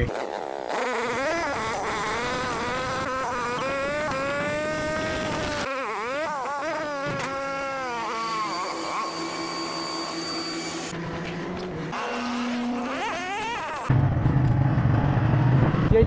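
A wordless voice drawing out long tones that glide up and down. About two seconds before the end a louder, steady low rumble of a motorcycle engine running cuts in.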